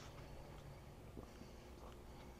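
Near silence: a faint low background rumble with a couple of soft taps, one about a second in and one near the end.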